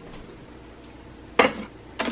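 A ceramic mug set down on a single-serve coffee brewer's drip tray with one sharp clack about three-quarters of the way in, after a stretch of quiet room sound.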